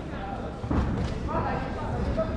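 A single thud on the boxing ring about two-thirds of a second in, from a punch or a boxer's footwork on the canvas, followed by people's voices in the hall.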